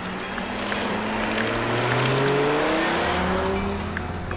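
A car driving past, its engine note rising as it accelerates, with a steady noise of tyres and wind. It is loudest about two seconds in and fades slightly toward the end.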